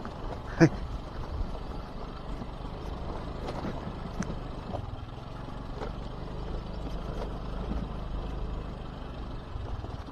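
Scooter engine running low and steady at slow riding speed on a rough dirt road, with road noise.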